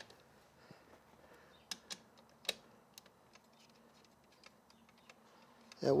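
A few scattered light metallic clicks and taps from a socket wrench on an extension working loose an E14 external Torx bolt on a steel seat-back frame. The loudest click comes about two and a half seconds in.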